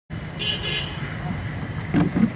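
Steady background noise of indistinct voices with a traffic-like rumble, starting abruptly as the recording begins.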